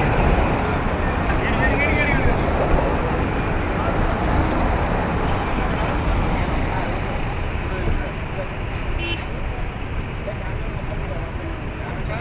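Traffic noise of a convoy of SUVs driving past at speed: a steady, loud rumble of engines, tyres and air, with voices underneath. A short high tone sounds briefly about nine seconds in.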